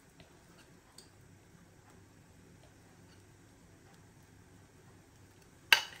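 Quiet room tone with a few faint ticks as thick batter is poured from a glass mixing bowl with a wire whisk resting in it, then a sharp knock near the end.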